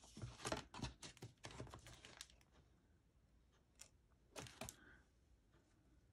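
Faint clicks and rustles of stiff die-cut cardstock pieces being handled and fitted together, a run of small taps for the first two seconds, then a pause and a brief second cluster.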